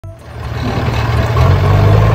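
Tractor engine running with a steady low hum, growing louder over the first second as the toy tractor and trailer drive in.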